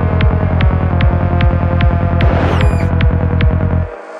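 Psytrance track: a steady kick drum with a rolling bassline under higher synth layers. The kick and bass drop out suddenly near the end, leaving only faint higher sounds.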